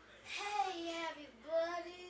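A young girl singing long held notes in two phrases, with a short break about one and a half seconds in.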